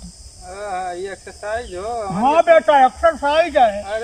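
A man's voice making long, drawn-out vocal sounds that slide up and down in pitch, starting about half a second in, over a steady high-pitched hiss.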